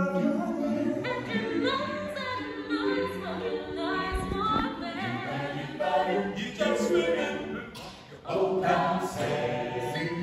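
Mixed-voice a cappella choir singing in harmony without accompaniment, under a rotunda dome, with a short break between phrases about eight seconds in.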